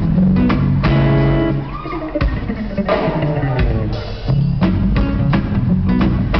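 A live band playing: a guitar over a drum kit and bass, with steady drum hits.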